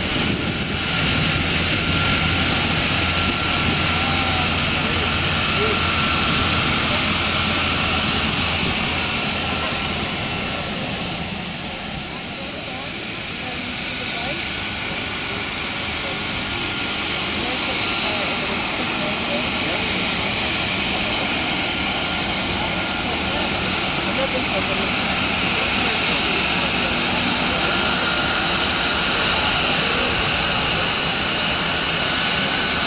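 De Havilland Canada DHC-6 Twin Otter floatplane's two Pratt & Whitney PT6A turboprop engines running at taxi power: a steady high turbine whine over propeller noise. The sound dips a little around the middle and then swells again.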